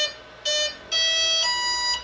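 Electronic speed controllers of a twin brushless-motor RC plane sounding their start-up tones through the motors just after the LiPo battery is plugged in: short beeps at the start and about half a second in, then a long lower tone stepping up to a higher one. This is the sign that the ESCs have powered up and armed.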